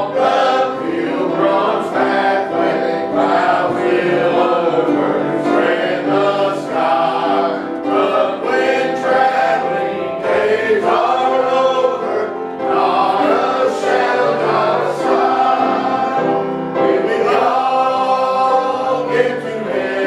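Church congregation singing a hymn together, many voices in unison with a man's voice among them.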